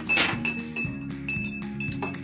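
A metal spoon stirring liquid in a drinking glass, clinking against the glass several times at irregular intervals, with background music.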